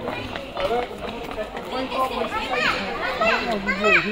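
Mostly people talking, with higher-pitched, sweeping voice calls in the second half, typical of a small child calling out.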